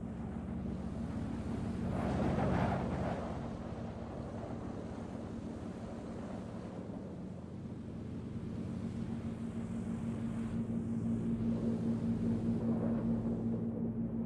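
Steady drone of airship engines, a hum of several low tones under a wash of wind noise. It swells briefly about two seconds in.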